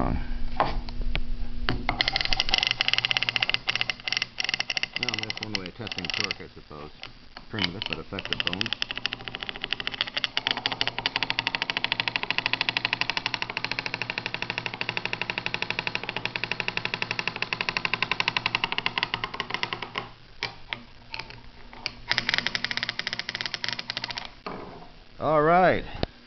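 Small battery-driven 1950s US-military electric motor running with a fast, even rattling buzz. Its speed dips and recovers a few times as it is loaded by hand to test its torque.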